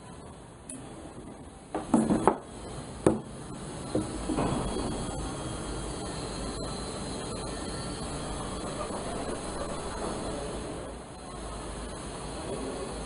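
A few brief knocks and handling sounds, the loudest about two to four seconds in, then a steady low background noise with a hum.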